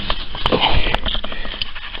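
Close handling noise of a hand wiping a fogged camera lens: rubbing and scraping with scattered clicks against the camera body.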